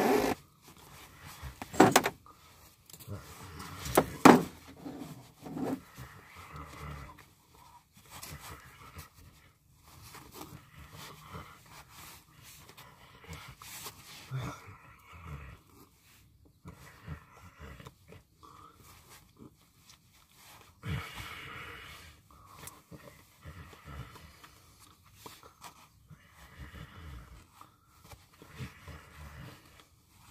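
A man talking, with a few sharp knocks, the loudest about two and four seconds in.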